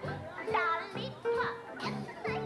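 A woman singing in a high, childlike voice, with swooping pitch, over instrumental accompaniment that holds steady low notes.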